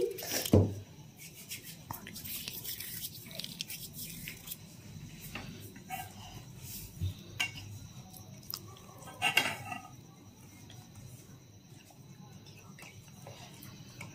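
A metal spoon clinking and scraping now and then against a steel bowl as paper-mâché dough is mixed, with a louder knock about half a second in.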